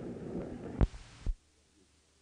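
Faint hiss and room noise, two low thumps about a second in, then the recording cuts off abruptly to dead silence, as the old interview tape comes to its end.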